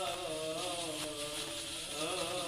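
A single voice chanting Syriac Orthodox liturgical chant, holding long notes that bend slowly in pitch.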